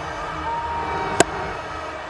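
Stadium crowd noise with a single sharp crack about a second in: a cricket bat striking the ball.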